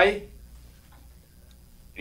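A spoken line ends just after the start, then a pause in the dialogue with only a faint low hum and a couple of faint ticks. Speech resumes at the very end.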